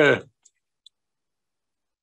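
A man's brief spoken "uh", then near silence broken by two faint, short clicks about half a second and just under a second in.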